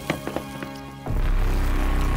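Background music with a few light taps, then about a second in a sudden loud, low rushing whoosh sound effect as the rangers zoom away at speed.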